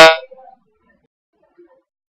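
A man's voice holding a hesitant "uh" for about half a second, then near silence.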